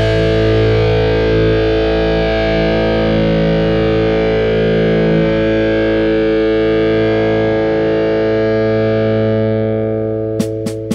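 Heavily distorted electric guitar, with bass beneath, holding one sustained chord that rings on steadily and begins to fade in the last couple of seconds.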